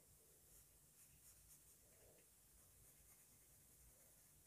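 Near silence, with a few faint scratches of a pencil on paper in the first half.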